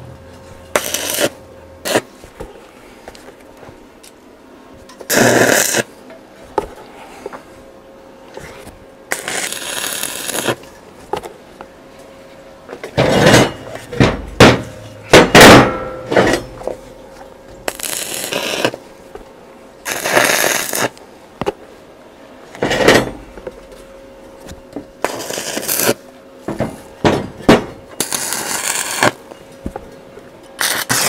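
Welder tack-welding steel square tubing: about eight short bursts of crackling arc, each a second or two long, with pauses between, over a faint steady hum.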